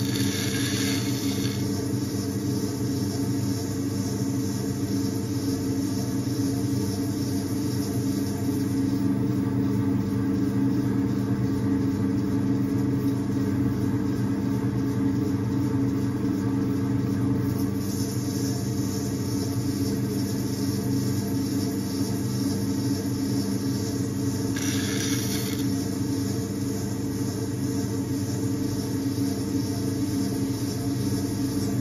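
Potter's wheel humming steadily as it spins while wet clay is shaped by hand. Two brief hissing swishes come at the start and about 25 seconds in.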